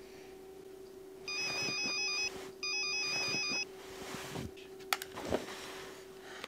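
A telephone ringing twice: two bursts of a rapidly warbling electronic ring, each about a second long, with a short pause between them.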